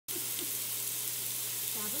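Raw meat slices sizzling steadily on the hot grill plate of an electric hotpot-and-grill cooker, over a steady low hum.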